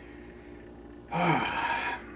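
A man's audible breathy sigh, falling in pitch, about a second in and lasting under a second, over a faint steady room hum.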